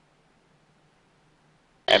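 Near silence with a faint hiss and low hum on the cockpit audio, then a radio call cuts in abruptly just before the end with a man's voice.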